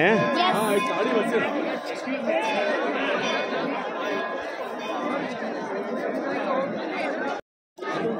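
Crowd chatter: many people talking at once around the speaker, steady throughout, with a faint steady tone in the background. The sound cuts out to silence for a moment near the end.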